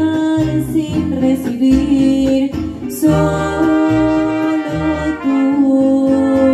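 A mariachi band playing live: brass holds long notes over strummed guitars and a walking guitarrón bass line, with singing. A new phrase comes in with a strong attack about halfway through.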